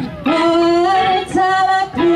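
A woman singing live into a microphone, holding two long notes, with a band's electric guitar behind her.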